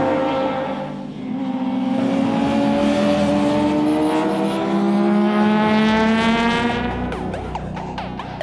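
A high-revving racing motorcycle engine. About a second in, a new engine note takes over and falls slowly and steadily in pitch for several seconds as the bike goes by.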